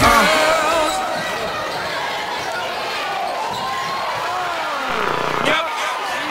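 Live game sound in a school gymnasium: spectators' voices and shouts echoing in the hall, with a basketball bouncing on the hardwood court.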